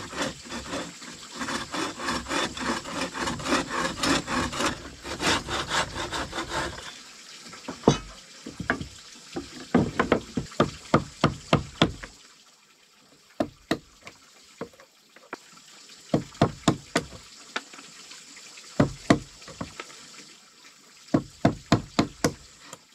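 Bow saw cutting through wood in quick back-and-forth strokes for the first several seconds, then a wood chisel being struck with a length of board used as a mallet: clusters of sharp knocks, a few a second, with short pauses between them.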